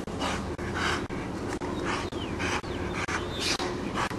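Boerboel dog panting hard from running, a steady rhythm of about two breaths a second.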